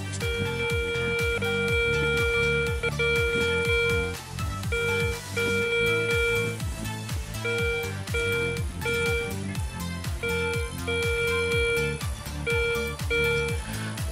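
Garrett Ace 250 metal detector sounding its target tone as a copper coin is passed over its NEL Tornado search coil. The tone is one steady mid-pitched note: a long stretch at first, then a string of short on-and-off beeps as the coin goes in and out of range. Background music with guitar runs underneath.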